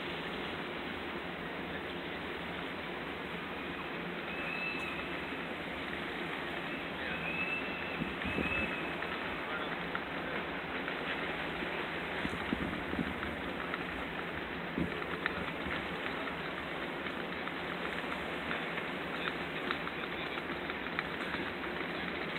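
Steady outdoor background noise, an even hiss, with a few faint high thin tones briefly about a quarter to a third of the way in and scattered light ticks.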